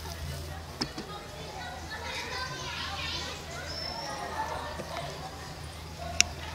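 Indistinct voices of people talking in the background over a steady low hum, with a few light clicks and a short high whistle about four seconds in.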